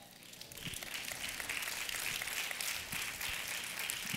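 Congregation applauding, swelling up from about half a second in and then holding steady.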